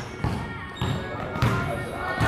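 A basketball bouncing on a hardwood gym floor, about four thuds roughly half a second apart.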